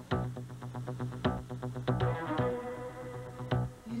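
Background music: a series of sharply struck notes that die away, over a steady low held tone.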